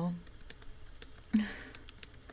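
Computer keyboard typing: a run of irregular key clicks. A brief short vocal sound from a woman comes about one and a half seconds in.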